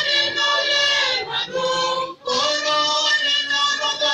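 Church choir singing, women's voices to the fore, in long held phrases with short breaks for breath about a second and two seconds in.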